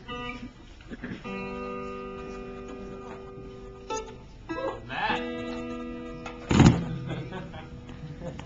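Plucked guitar strings ringing out in long held notes, twice, a few seconds apart. Near the end there is one sharp, loud knock.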